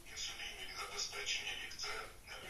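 Speech with music under it.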